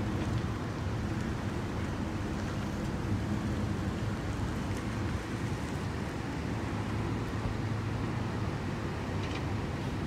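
A vehicle engine idling steadily, a low even hum, with some wind noise on the microphone.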